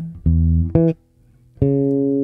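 Four-string electric bass guitar plucked fingerstyle, unaccompanied: a short low note, a quick second note, a pause of about half a second, then a longer held note near the end.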